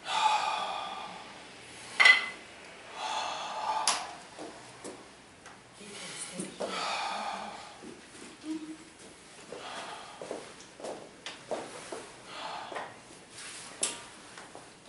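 A man taking loud, forceful breaths, four in the first eight seconds and one of them short and sharp, psyching himself up before bending a power twister spring bar. After that it goes quieter, with scattered small clicks and knocks.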